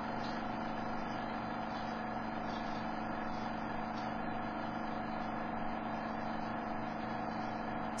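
A steady, even hum with a hiss over it, unchanging throughout.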